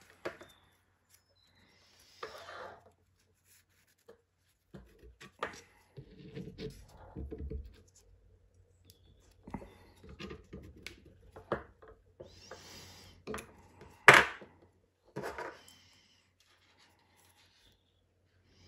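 Paracord rubbing and scraping as hands pull and tuck the cord through a woven bracelet, in irregular spells with scattered small clicks. One sharp click about 14 seconds in is the loudest sound.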